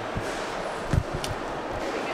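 A few dull, low thumps, the loudest about a second in, over steady background noise.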